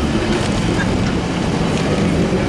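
Passenger coaches rolling slowly past a station platform, with a steady low rumble of wheels on rails.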